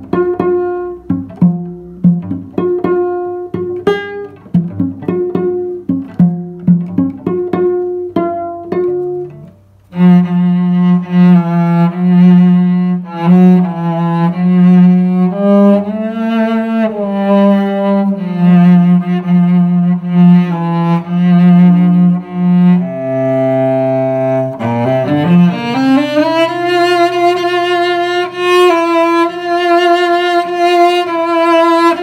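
Solo cello: about ten seconds of short plucked pizzicato notes, then bowed, sustained notes for the rest, with a rising slide in pitch about 25 seconds in.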